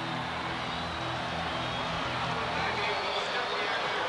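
Stadium crowd cheering after a touchdown, a steady roar of many voices, with a marching band playing held low notes underneath.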